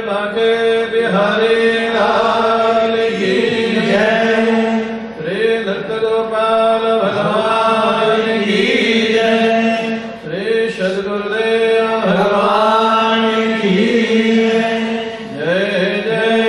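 Devotional chanting sung in repeated melodic phrases over a steady held drone note. The phrases break about every five seconds.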